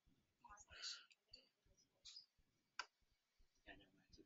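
Near silence with a few faint computer mouse clicks, the sharpest just before three seconds in, and a faint breath or murmur about a second in.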